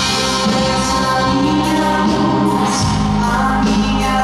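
Live gospel worship song: a small vocal group singing with electric guitar accompaniment, the low bass notes shifting to a new chord a little before the end.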